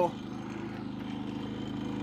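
Harbor Freight Predator 3500 inverter generator running steadily with no load on it, a constant engine hum.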